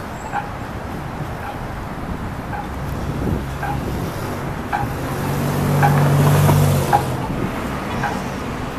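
Street traffic noise, with a motor vehicle's engine growing louder from about halfway through, loudest near the end, then dropping away.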